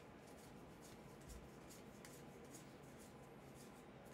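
Faint, quick swishes of trading cards being slid off a hand-held stack one after another, card rubbing on card.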